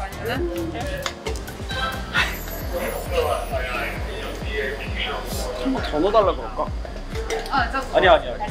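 Background music with a steady beat under people chatting, with light clinks of metal spoons and tongs against topping bowls and cups.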